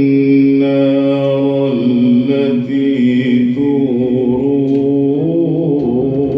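A man's voice reciting the Quran in the drawn-out melodic tajweed style. He holds long, steady notes that step slowly to new pitches, with quick wavering ornaments about four seconds in.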